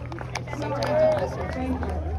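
People's voices talking close by while the band is not playing, over a steady low hum from the stage sound system.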